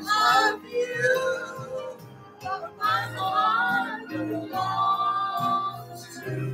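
A man singing into a handheld microphone over backing music.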